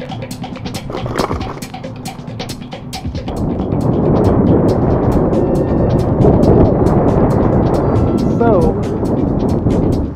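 Music with a drum beat for about three seconds, then loud wind rushing over the camera microphone of a moving bicycle, with the music still running under it.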